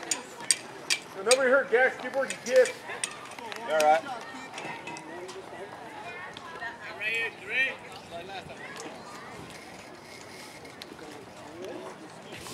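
Voices shouting with a run of sharp claps, about three a second, over the first four seconds. Then quieter chatter, with one high call about seven seconds in.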